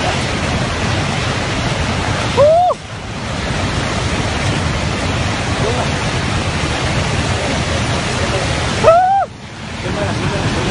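Loud, steady roar of rushing floodwater. A person shouts briefly twice above it, about two and a half seconds in and again near the end, each shout rising and then falling in pitch.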